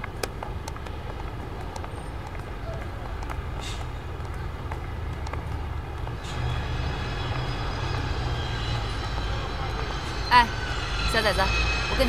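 Steady low rumble of distant road traffic, a little fuller from about halfway through, with a couple of short voice sounds near the end.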